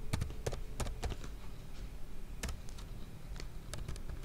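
Computer keyboard typing: a quick run of irregular keystrokes in the first second or so, then a few scattered key presses later.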